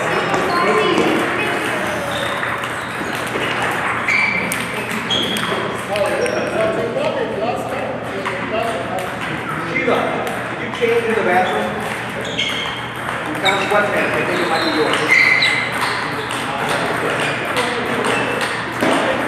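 Table tennis rally: the ball clicks off the paddles and bounces on the table again and again at an irregular pace, with short high pings between the sharper knocks. Voices carry in the background.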